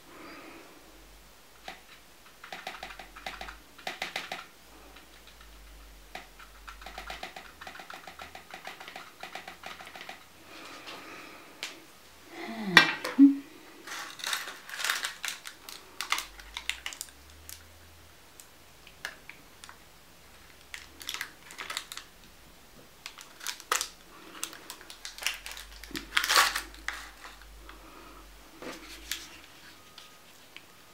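Light clicks, taps and paper crinkling as a paintbrush and paper cupcake liners of wax are handled around a metal muffin tin. The loudest moment is a clatter with a brief falling squeak about 13 seconds in.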